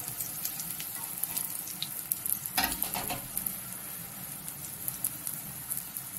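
Besan-battered curry leaves frying in hot oil in a kadai: a steady sizzle with fine crackles, and one brief knock about two and a half seconds in.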